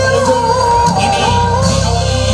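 Live stage music: a long, wavering melody, most likely sung, held over a steady drum beat.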